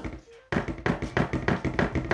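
A cased Samsung Galaxy Z Fold 5, laid open on a wooden desk, wobbling when pressed near one corner: a rapid run of light taps, about six a second, starting about half a second in. It rocks on its protruding camera hump, which keeps it from lying flat.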